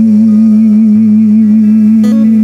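A man's voice holding one long sung note with a slight waver, over a sustained acoustic guitar chord.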